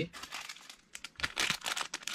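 Thin clear plastic polybag crinkling as it is handled, a run of irregular crackles that gets denser and louder about a second in.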